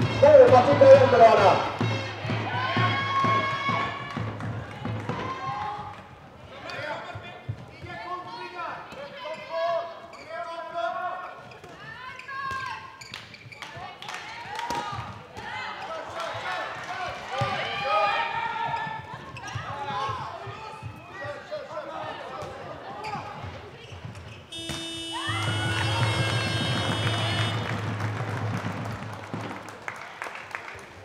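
A handball bouncing on a sports-hall floor amid music with singing. Near the end comes a long electronic scoreboard horn, steady for about three seconds: the end-of-half signal as the clock reaches 25:00.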